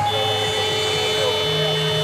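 Basketball arena horn sounding one steady, continuous blast over background music.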